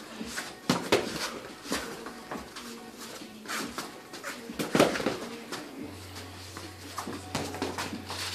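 Boxing gloves thudding as sparring punches land on gloves and headgear, with footwork on the ring canvas, in irregular scattered knocks. A low steady hum comes in about six seconds in.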